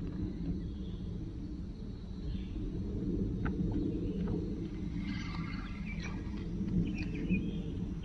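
Steady low rumble of open-air ambience with a few faint light clicks, and faint bird chirps about five seconds in.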